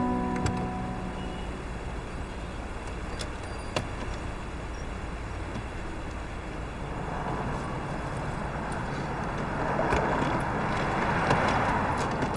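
Steady traffic hum at a roadside. A car's tyre and engine noise builds over several seconds as it drives past, then eases off. There are a few light clicks near the end.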